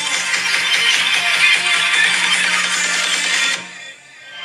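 Electronic music playing out loud through an iPhone's built-in stereo speakers, thin with little bass. It cuts off abruptly shortly before the end.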